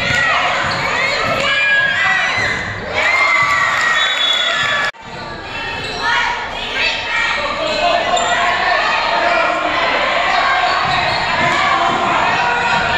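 A basketball bouncing on a gym floor, with young players and spectators calling out and shouting in a large echoing hall. The sound breaks off abruptly for an instant about five seconds in.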